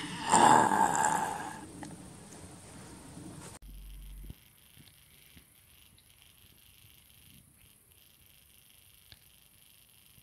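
Loud rustling and handling noise for the first second or so, fading out, then a sudden cut to a faint steady high-pitched hiss with a few soft ticks.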